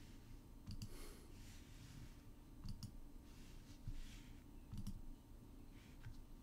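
Faint computer mouse clicks against quiet room tone: three soft double clicks, about two seconds apart.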